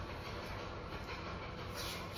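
Athletic tape being pulled off the roll, a short ripping sound near the end, over a steady low background rumble.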